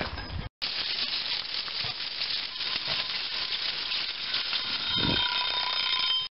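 Lamb chops sizzling under an oven's broiler elements, a steady hiss. A steady electronic alarm tone comes in near the end.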